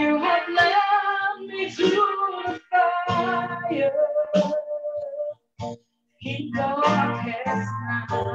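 Music: a voice singing a melody over instrumental accompaniment, breaking off briefly a little past halfway before resuming.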